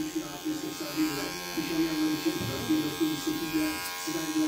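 Wahl Magic Clip cordless hair clipper running with a steady buzz as its blade cuts beard stubble along the cheek and jaw.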